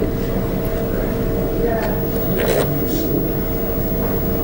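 Steady hum with two constant tones over low rumbling background noise.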